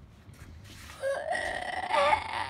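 A long, high-pitched call held on one nearly level note, starting about halfway through and still going at the end.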